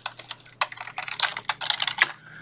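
Typing on a computer keyboard: a quick run of key clicks as a short web address is typed into a browser's address bar.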